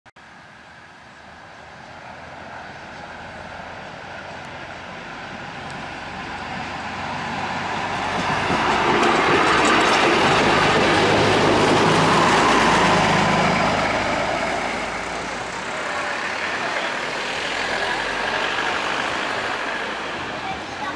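Red Uerdingen diesel railbus approaching and passing close by: its engine and wheels on the rails grow louder to a peak about nine to thirteen seconds in, then fade as it moves away.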